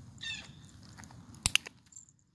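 A training clicker clicks twice in quick succession about one and a half seconds in, the sharpest and loudest sound. Near the start a Bengal kitten gives a brief high mew.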